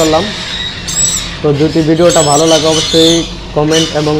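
Caged parrots giving short, shrill squawks several times, over a man talking.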